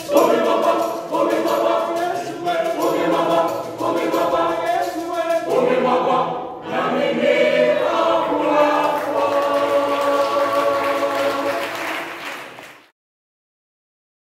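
Junior church choir singing together, the last few seconds a long held chord; the sound cuts off suddenly to silence near the end.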